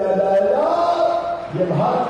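A man's voice through microphones, shouting a slogan in long drawn-out calls with the vowels held, like a chant.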